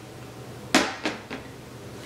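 A glass perfume bottle being set down on the coffee table among other bottles: a sharp clink of glass about three-quarters of a second in, followed by two softer clinks.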